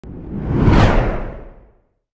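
Whoosh sound effect of a TV news channel's animated logo ident, swelling to a peak just under a second in and then fading away.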